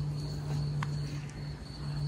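A steady low hum with a thin, steady high insect trill over it, and one brief faint squeak a little under a second in.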